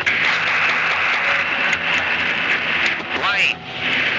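Playback of a recorded emergency telephone call: a steady, loud hiss of line noise with a voice under it, and a voice rising sharply in pitch about three and a half seconds in.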